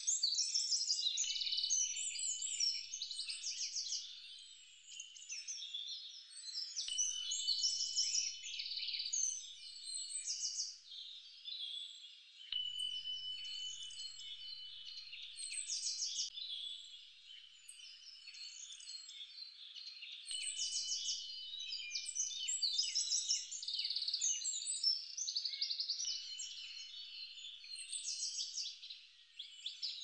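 Many birds chirping and singing over one another in a dense chorus, with a thin held whistle note now and then.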